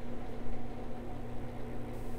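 Room tone: a steady low hum with a faint hiss, unchanging throughout.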